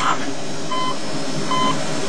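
Hospital bedside monitor beeping at a steady pace: two short, high single-pitch beeps about 0.8 s apart, over a steady background hiss.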